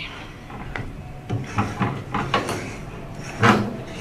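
Silicone spatula stirring and scraping thick strawberry puree in a metal saucepan, giving irregular soft scrapes and knocks, with a louder clunk about three and a half seconds in.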